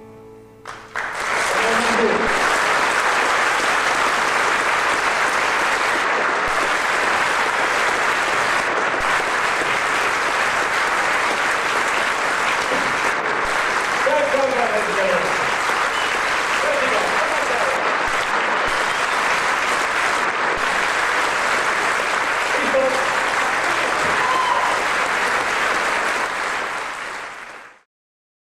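An audience applauding steadily and loudly in a large hall, starting about a second in as the last acoustic guitar notes fade. The applause cuts off abruptly near the end.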